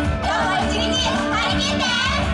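Upbeat pop backing track with a steady bass beat, with young female voices calling out over it through the stage PA.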